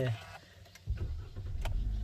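A 2020 Hyundai Accent's engine being started, heard from inside the cabin: about a second in, a low rumble comes in suddenly and carries on steadily as the engine runs.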